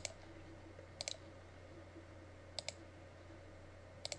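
Faint computer mouse clicks: short double clicks, each a press and release, three or four times a second or more apart, over a low steady hum.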